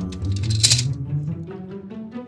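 A plastic Connect 4 disc dropped into the grid, clattering down its column once about two-thirds of a second in, over background music with low bass notes.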